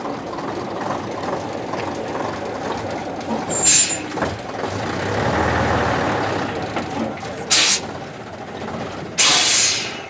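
Vintage AEC lorry's engine running as it moves off slowly, its note swelling about halfway through. Three short air-brake hisses, the last and longest near the end.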